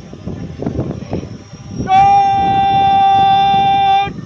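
Crowd murmur, then about halfway through a horn is blown in one loud, long, steady note.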